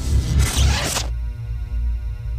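Logo-animation sound effect: a rushing whoosh that cuts off sharply about a second in, over a steady low bass layer of the ident music.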